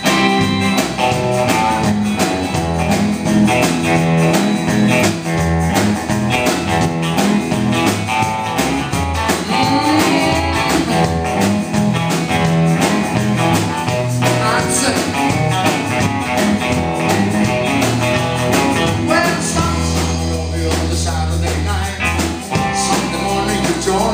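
Live rock and roll band playing an up-tempo number, led by a Gibson Les Paul electric guitar through a Marshall amplifier, with bass and a steady beat underneath.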